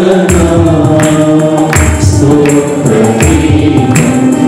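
Choir singing a Telugu Christian worship song with instrumental accompaniment and a steady beat.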